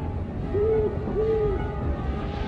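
An owl hooting twice, two short hoots of nearly steady pitch about half a second apart, over low background music.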